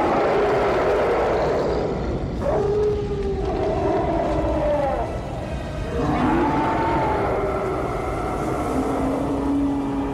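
Film sound effects: a steady rushing roar with long, wavering howls that glide up and down, each lasting a couple of seconds, as the demon is destroyed with the scepter.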